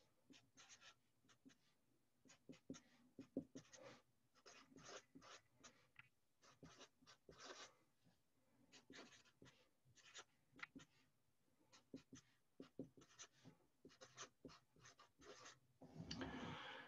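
Faint, short, irregular strokes of a Sharpie marker writing on paper.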